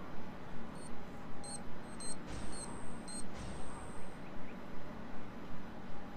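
Video game audio: a steady pulsing beat, about two and a half pulses a second, with a few short high-pitched beeps in the first half.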